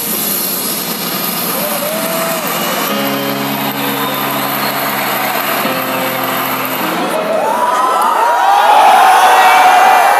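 Concert crowd screaming and cheering over stage intro music. A held low chord sounds in the middle, then the shouts swell to their loudest over the last few seconds.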